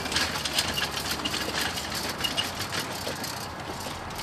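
Rattling of a folding wheeled coffin bier rolled over brick block paving, with scattered clicks and footsteps.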